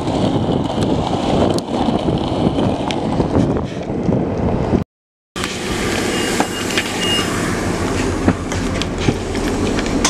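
Skateboard wheels rolling over rough pavement with a busy rattle of small clicks. After an abrupt cut about five seconds in, there is a steady vehicle drone.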